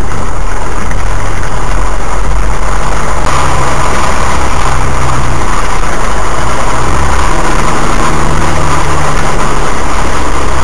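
A 4x4's engine running at low revs as it crawls along a rutted, muddy lane, heard from inside the cab; the engine note shifts up and down every second or two as the revs change. A rushing noise grows louder about three seconds in.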